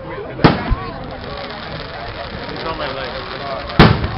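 Aerial fireworks going off: two loud, sharp bangs about three seconds apart, the first about half a second in and the second near the end, with a softer thump just after the first. People chatter in the background.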